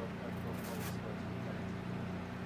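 A steady low machine hum, with a short hiss about half a second in.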